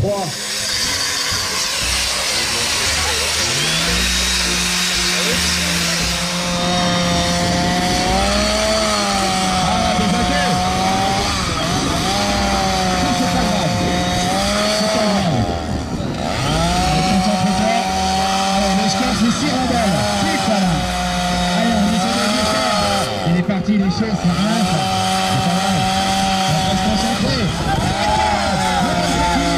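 Chainsaw running at high revs while cutting rounds off an upright log. The engine note comes in about four seconds in, then dips and picks back up every few seconds as the chain bites into the wood. It cuts out briefly twice.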